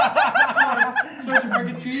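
Laughter: a quick run of short chuckles, several to a second, easing off about halfway through before a few more near the end.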